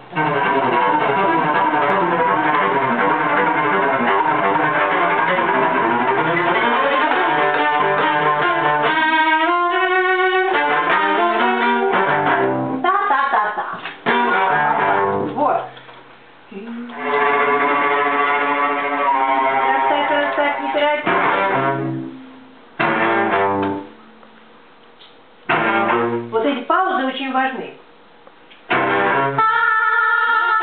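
A string ensemble plays a passage of a newly composed piece in rehearsal, with bowed and plucked parts. The music runs in phrases that break off into short lulls several times.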